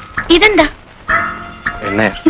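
Film background score of repeated held notes, broken about a third of a second in by a short rising-and-falling vocal cry, with another brief falling one near the end.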